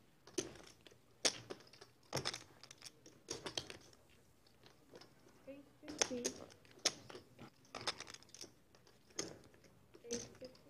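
Clay poker chips clicking and clacking together in irregular handfuls as players handle and shuffle their stacks at the table.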